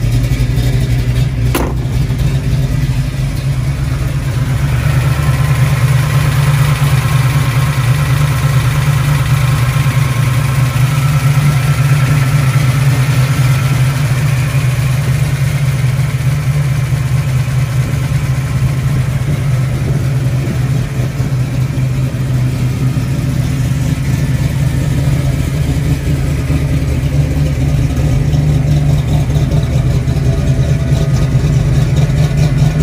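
Boss 302 small-block V8 idling steadily with a deep, even exhaust note. A single sharp click sounds about a second and a half in.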